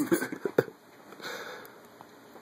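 A person's laughter trailing off in a few short, breathy bursts, cut off by a sharp click about half a second in; after that only a soft breath-like hiss.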